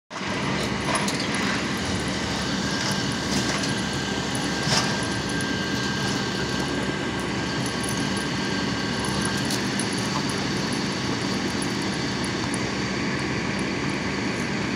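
A steady mechanical drone with a constant low hum, like an engine or motor running without change, with a few brief sharp sounds in the first five seconds.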